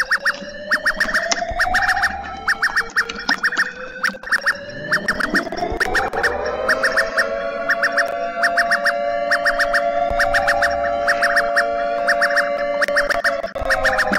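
Emergency-alert-style alarm played from a compilation video: rapid chattering clicks over wavering tones, with a rising sweep about five seconds in that settles into steady held tones. It sounds like a squeaky toy.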